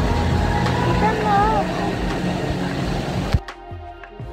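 Indoor water-park din: a steady wash of running water and voices, with a brief high, wavering voice about a second in. About three and a half seconds in it cuts off suddenly to background music.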